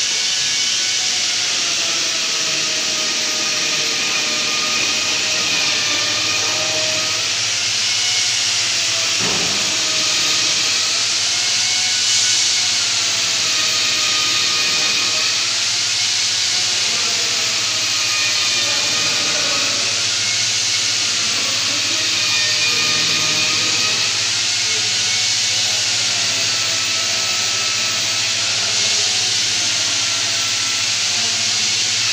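Process-plant equipment running: a steady loud hiss with a whine over it that wavers slowly up and down in pitch, over a low hum. A single knock comes about nine seconds in.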